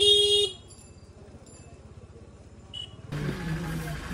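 A vehicle horn honks once, a single steady note lasting about half a second, during a motor-scooter ride through a busy street, followed by the low, quiet running of the ride. About three seconds in the sound switches to the louder bustle of a crowded shop.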